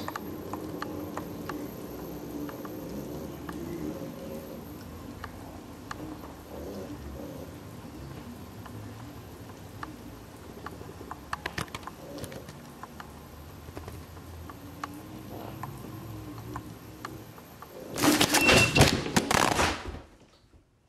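Self-balancing hoverboard rolling across a hardwood floor, its motors humming steadily under scattered small clicks and knocks. Near the end comes a loud clattering crash lasting about two seconds: the rider falls after stepping off with one foot while the board was moving, and the board lurched forward.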